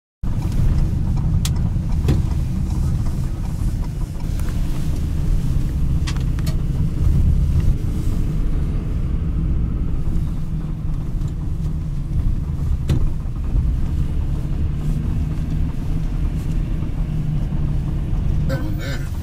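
Steady low rumble of a car's engine and tyres heard from inside the cabin while driving slowly, with a few brief clicks.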